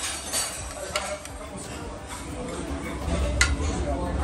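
Metal serving spoons and tongs clinking against ceramic buffet bowls and a plate: a few sharp clinks, the loudest near the end, over the chatter of a busy restaurant.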